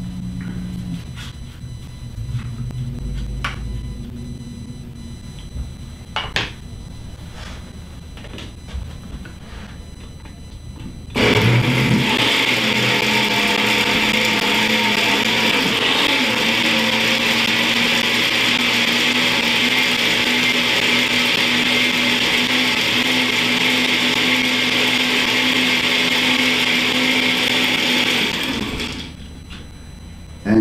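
Countertop blender with a glass jar, switched on about eleven seconds in and running steadily for about seventeen seconds, blending a clump of wheatgrass into a thick fruit-and-greens smoothie. It winds down and stops shortly before the end. Before it starts, a few light clicks and knocks.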